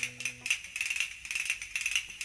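A rattle or shaker playing quick, even strokes, about five or six a second, over a held musical note that dies away about half a second in.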